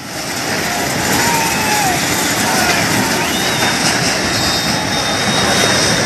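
Multi-storey concrete building collapsing: a loud, steady rushing roar of falling masonry and debris that builds up over the first second.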